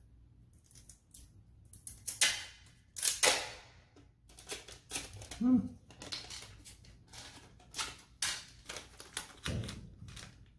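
Tape being pulled off a roll in short rips and pressed around a flexible aluminum foil dryer vent duct, with crinkling of the foil as it is handled: a string of sharp crackles and clicks.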